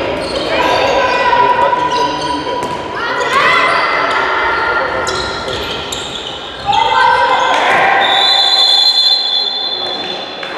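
Indoor handball game: a ball bouncing on the wooden floor and players and spectators calling out, echoing in a large sports hall. A long, high, steady tone starts about two seconds before the end.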